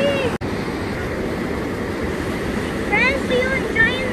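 Mountain river rushing steadily over white-water rapids, with a brief sudden gap about half a second in. Near the end, a few short pitched voice sounds rise over the water.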